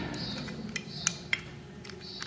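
Small metal clicks and clinks, about five at uneven intervals, as the cap and plunger parts of a Bijur one-shot lube pump are worked by hand onto the pump body.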